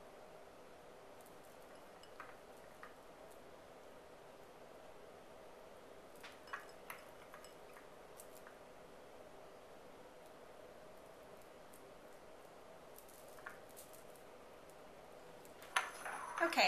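Near-silent room tone with a faint steady hum, broken by a few soft, short clicks as raspberries are hand-placed on a fruit tart.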